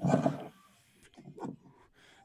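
A person exhaling a lungful of vape vapour close to the microphone: a sudden breathy rush at the start that fades within about half a second, followed by faint rustling.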